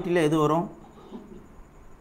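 A man's voice saying one word, then quiet room tone with faint small noises for the rest of the time.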